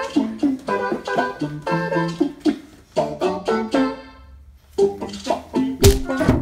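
Cha-cha dance music played on keyboard or organ-like sounds, short notes in a steady rhythm, with a brief break in the music about four seconds in. A single sharp click near the end.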